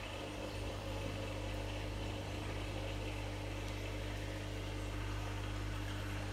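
Steady low hum of an aquarium air pump driving a sponge filter, unchanging throughout.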